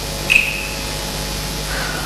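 A single sharp struck ring from the opera band's metal percussion about a third of a second in, fading within a fraction of a second, with a fainter lower ring near the end, over a steady stage hum.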